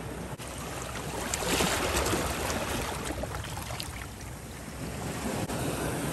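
Shallow water rushing and lapping over shore rocks, a steady wash that swells a little about one and a half seconds in, with some wind on the microphone.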